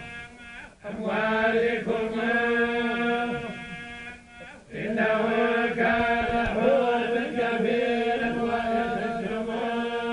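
A group of men chanting the Quran together in the North African tolba style, with long held, melismatic notes. Two long phrases, separated by a short breath pause about four and a half seconds in.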